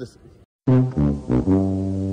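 A brass-like musical sound effect comes in abruptly after a moment of silence: three short notes, then one long held note.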